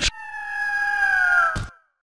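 Eagle-screech sound effect: a sharp hit, then one long screech that falls slowly in pitch, cut off by a second hit about one and a half seconds in.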